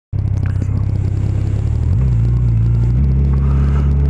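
Yamaha FJR1300 motorcycle's inline-four engine running as the bike moves off slowly, its note stepping up about two seconds in and again at three seconds.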